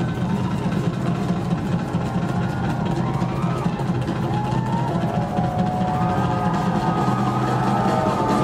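Live rock drum kit solo: fast, continuous strokes around the toms and snare over the bass drum. Faint voices rise above the drumming in the second half.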